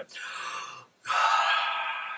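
A man's breaths through the mouth, with no voice or note: a softer breath, then a longer, louder intake of breath about a second in, as a horn player fills his lungs before a phrase.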